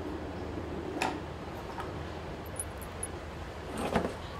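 Quiet room ambience with a low steady hum, broken by a few faint clicks, one sharper tap about a second in and a short swell just before the end.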